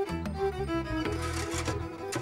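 Background score with bowed strings, violin and cello, playing held notes over a low bass line.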